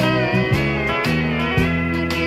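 Live country band playing an instrumental passage: a steel guitar's gliding lead over guitar and a bass line.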